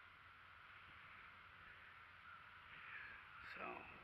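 Near silence with quiet open-air background, and a faint crow caw shortly before the end.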